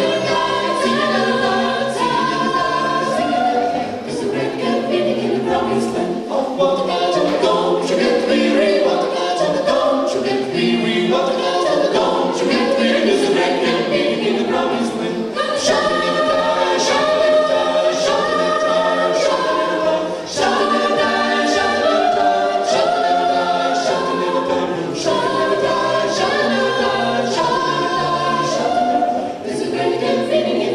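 A mixed-voice a cappella vocal ensemble singing a gospel song through microphones in close harmony, over a sharp beat that ticks about twice a second.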